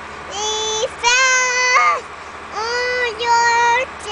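A young girl singing in a high voice: four long held notes with short breaks between them, the second sliding up in pitch at its end.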